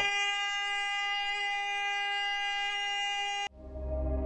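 A steady pitched tone, held without any rise or fall in pitch, cuts off abruptly about three and a half seconds in; soft ambient music with a low drone follows.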